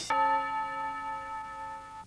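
A single bell-like chime struck once just after the start, ringing out and fading slowly as the song's closing note.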